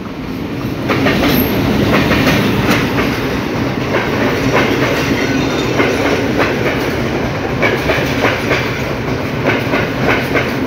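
Passenger train of red coaches hauled by a Sri Lanka Railways M10A diesel locomotive passing close by, its wheels clattering over the rail joints with many quick clicks. It grows louder about a second in, as the coaches come alongside.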